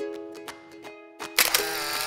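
Background music with steady held notes, broken about a second and a half in by a loud, half-second camera-shutter sound effect.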